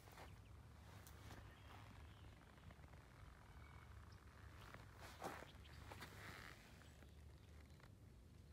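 Near silence: faint outdoor background with a low steady hum and a few soft rustles or ticks, the clearest a little over five seconds in.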